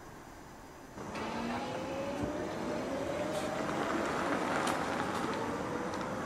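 Mercedes GLE 500e plug-in hybrid SUV driving on the road, its whine rising slowly in pitch over tyre and road noise as it accelerates. This starts suddenly about a second in, after a faint hiss, and a few faint ticks come through it.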